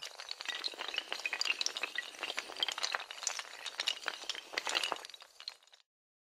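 Sound effect of a long cascade of toppling domino tiles: a sharp hit, then a dense, rapid run of hard clicks and clinks that stops abruptly just before the end.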